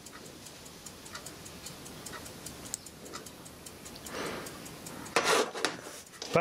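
A clock ticking steadily about once a second, faint under room noise, with a short burst of handling noise a little after five seconds in.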